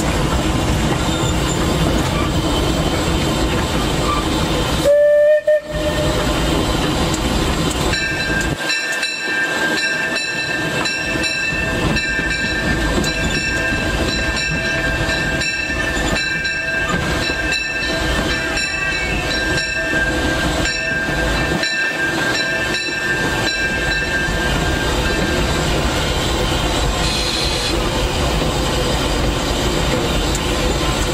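Steam locomotive C.K. Holliday running, heard from the cab: a steady rumble throughout, with one short whistle blast about five seconds in. From about eight seconds in until about twenty-five, a steady high ringing tone pulses at a regular beat over the running.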